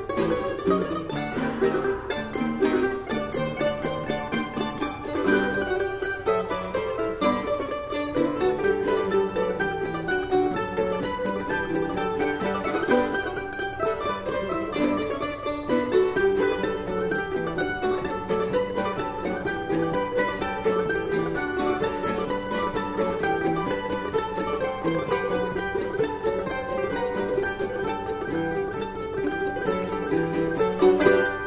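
A mandolin orchestra playing an ensemble piece: many plucked mandolin-family strings in fast, dense notes over lower plucked bass lines, swelling near the end.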